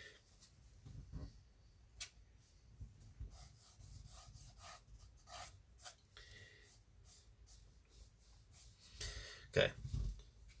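Faint scattered scratches, rubs and light taps of a paintbrush and painting materials being handled, with a louder knock near the end.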